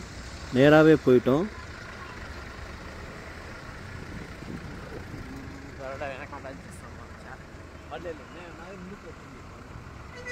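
Steady road-traffic noise heard from a vehicle moving slowly in traffic: a low engine rumble with a hiss of tyres and air.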